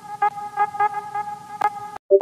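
A held, horn-like buzzing tone, pulsing about four times a second, with a sharp click near the end; it cuts off suddenly.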